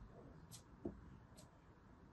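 Faint crisp crunches of a utility knife blade cutting through a small block of kinetic sand, with a single soft low tap a little under a second in.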